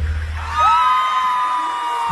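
Audience of fans screaming and cheering as the song's backing music drops away. The low music fades in the first half second, then long high-pitched screams rise and are held.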